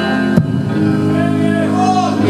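Live rock band playing sustained, held chords, with a sharp click about half a second in.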